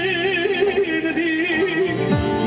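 A man sings one long, quivering, ornamented note into an amplified microphone in Kurdish folk style, over a live band's steady accompaniment.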